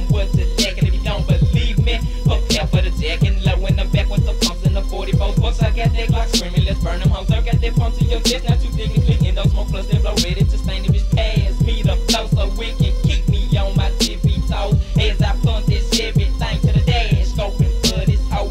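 Hip hop track: rapping over a beat with deep bass, dense low drum hits and a sharp hit about every two seconds.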